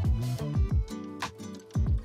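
Background music with a steady beat of deep, booming bass-drum hits about twice a second over held bass notes and crisp high percussion.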